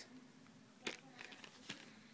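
Near silence with a few faint clicks and taps, two sharper ones about a second in and near the end, as a plastic pack of AA batteries is handled.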